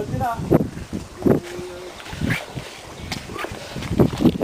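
Indistinct voices in short snatches, with wind rumbling on the microphone.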